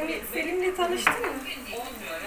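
Kitchenware clatter: a metal spoon and dishes knocking, with one sharp clink about a second in.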